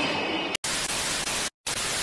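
Television static: a hiss of white noise that starts suddenly about half a second in, broken by a brief silence near the end.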